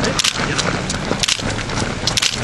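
Running shoes striking an asphalt road as a pack of runners passes close by: irregular, overlapping footfalls a few tenths of a second apart.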